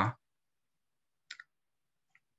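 Near silence after a spoken word ends at the very start, broken just past a second in by one brief double click.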